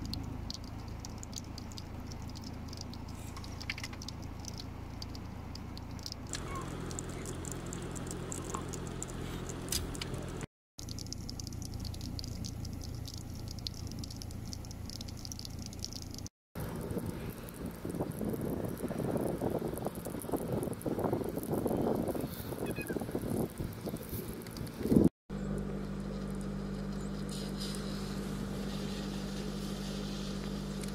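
Light rain pattering on wet ground and a muddy pool, in several short segments split by abrupt cuts, with a steady low hum underneath. In the middle stretch a louder, uneven gusting noise rises, and a single sharp knock comes just before the last cut.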